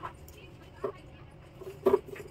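A toddler's short vocal sounds: two brief voiced calls about a second apart, the second one louder.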